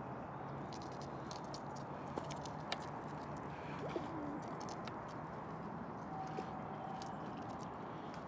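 Steady outdoor background hum with faint bird calls, including a short low call about four seconds in and a thin held note near the end, and a few faint light ticks.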